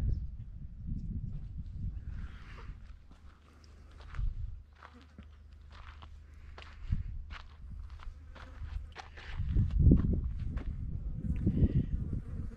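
Footsteps on dry, gravelly ground: an irregular scatter of short clicks. A louder low rumble comes about ten seconds in.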